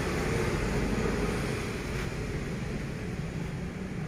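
Steady background noise of distant road traffic, with a low engine hum.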